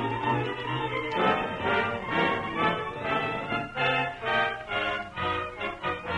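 Orchestral bridge music in a brisk, pulsing rhythm, with the narrow, dull sound of a 1930s radio transcription recording.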